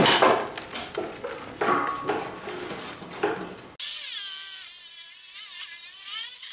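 Irregular clatter and knocks of tools and metal being handled, then about four seconds in a DeWalt abrasive chop saw starts cutting steel box section, a shrill, high grinding whine whose pitch wavers as the disc bites into the steel.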